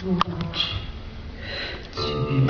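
A pause between guqin phrases: two short audible breaths drawn in through the nose, with a few small clicks near the start as a low guqin note dies away.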